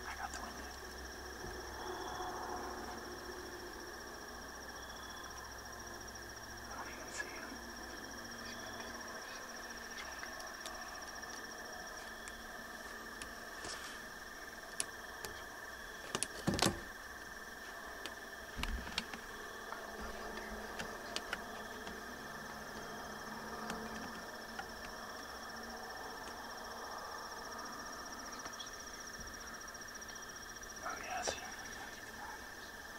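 Insects calling steadily in an evening field, a constant high trill on two pitches, with a few soft clicks and knocks scattered through, the loudest about sixteen seconds in.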